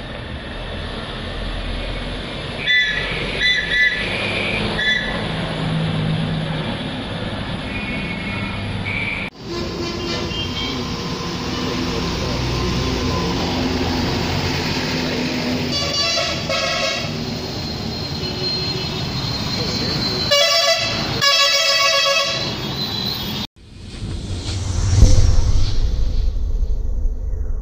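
Town-road traffic with heavy diesel trucks running past, broken by horn honks: a few short toots a few seconds in, more in the middle, and two longer blasts near the end. The sound cuts off sharply twice, and in the last couple of seconds a swelling electronic whoosh takes over.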